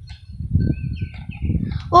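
Faint bird calls, short chirps and gliding notes, over a low, uneven rumble.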